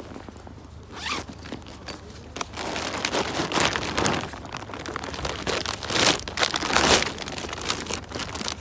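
A backpack zip pulled in several quick strokes, mixed with the crinkle and rustle of a plastic shopping bag, as things are packed into the bag.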